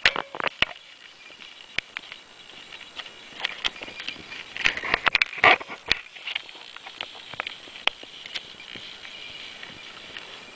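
A kitten's fur and paws rubbing and tapping against the camera and its microphone: scattered sharp clicks and rustles, busiest about five seconds in.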